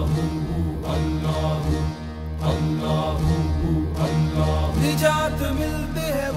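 Sufi devotional song music between sung lines: a sustained low drone under wavering melodic lines, punctuated by a sharp stroke about once a second.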